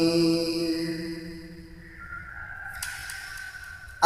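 A man singing a Bengali naat unaccompanied holds the last note of a phrase, which fades out over about two seconds. A quiet gap with a faint steady high tone follows before the next phrase begins.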